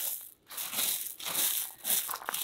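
Small loose gravel crunching and shifting under a hand digging through it to pull up a running bamboo rhizome. The crunching comes in a run of short scrapes, with a brief break just under half a second in.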